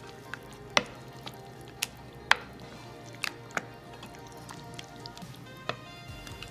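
A wooden spoon stirring thick guacamole in a glass bowl, knocking against the glass in about half a dozen irregular sharp clicks; the loudest comes a little past two seconds in.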